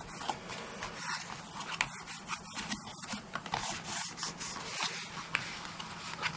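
Hands rubbing and smoothing paper and card stock, pressing a freshly glued patterned paper panel flat inside a card box, with a continuous dry rubbing and scraping.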